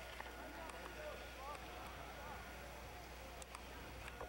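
Faint, distant voices of people on a ski slope, heard over a steady low hum and a thin high whine, with a few small clicks.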